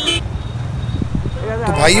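A vehicle horn sounds and stops abruptly just after the start, followed by a low, steady traffic rumble. A man's voice begins near the end.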